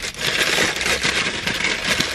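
White paper wrapping crinkling and rustling as it is pulled open by hand to unwrap a wine glass, a dense crackle of many small crackles.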